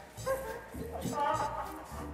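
A man making short, high-pitched comic vocal noises instead of words, over background music with a low, regular beat.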